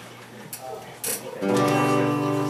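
A quiet moment with a faint single string note, then about a second and a half in an acoustic guitar chord is strummed and rings on: the opening of a folk song.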